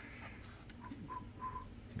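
Quiet room tone with three short, faint high tones about a second in.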